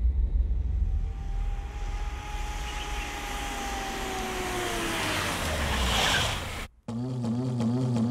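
Film sound effects of SUVs driving into a courtyard: a deep rumble with engine noise and a slowly falling tone, swelling and then cutting off abruptly near the end, where music comes in.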